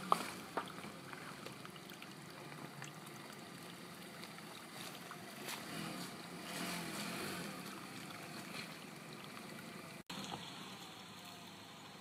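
Nissan X-Trail T31 crawling slowly over rocks, its engine running low under a steady rumble of tyres on stone, with a sharp knock right at the start.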